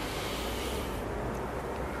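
A long, steady, deep breath in, filling the abdomen and chest to the limit as the first stage of a relaxation breathing exercise.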